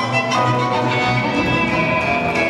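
Ballroom dance music played over the hall: an orchestral recording led by violins over a string section, with long held notes that change chord about a third of a second in and again about a second in.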